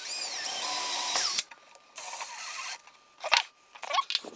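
Makita brushless cordless drill spinning a twist bit into the wall, its motor whine gliding in pitch, for about a second and a half. A shorter, quieter run follows a second later, then a few short clicks near the end.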